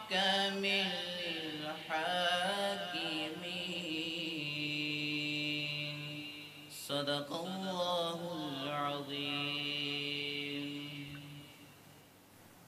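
A man reciting the Quran in the melodic tajweed style, holding long notes with ornamented pitch turns. There is a short break for breath about halfway, and the voice fades out near the end as the recitation closes.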